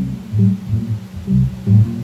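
Bass guitar playing a line of separate low notes, about three or four a second, in a live band set, with little else sounding above it.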